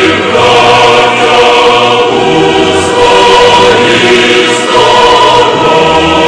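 Music of a choir singing sustained chords at a steady loudness.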